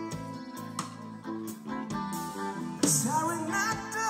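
Live band music: an instrumental passage of held and plucked notes, with a sung vocal line coming back in near the end.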